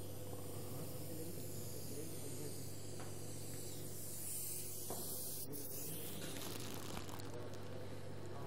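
A steady low hum under a high hiss, the hiss growing louder for about a second a little past the middle, with a few faint clicks.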